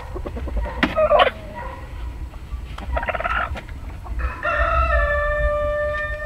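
Chickens calling: a few short calls in the first few seconds, then a rooster crowing, one long steady call beginning about four and a half seconds in.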